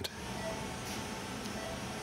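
Low steady hum of ventilation and equipment in a CT operating room, with faint short beeps repeating about every second and a bit from the anaesthetised patient's monitor.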